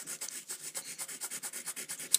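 Green crayon rubbed quickly back and forth across paper over a textured design plate, a faint, even scratching of about nine strokes a second.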